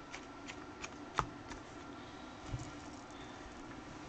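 Faint paper handling with a few small clicks, the sharpest about a second in, and a soft thump later, as a page is pressed onto the discs of a disc-bound planner.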